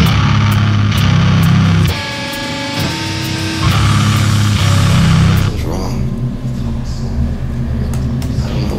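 Metalcore band playing live: heavy distorted guitar and bass chords with crashing cymbals in two loud stop-start bursts. About five and a half seconds in the cymbals stop and a lower sustained low note carries on.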